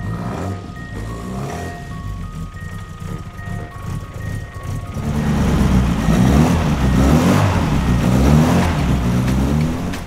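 A 1963 Austin Mini Cooper race car's transverse four-cylinder A-series engine running, at a steady idle at first, then revved up and down repeatedly and louder from about halfway. A light mallet-percussion melody plays over the first half.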